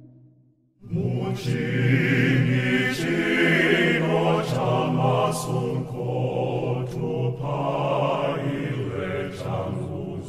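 Church choir singing a hymn. It opens with a short break of near silence, then the voices come back in under a second and sing on steadily.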